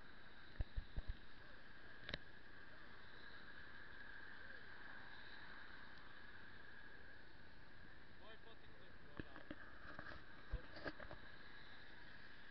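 Faint car-interior noise picked up by a dashcam microphone: a steady hum with scattered clicks and knocks as the car pulls away and turns.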